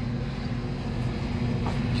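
Steady hum of running rooftop HVAC equipment, an unbroken drone with a constant low tone.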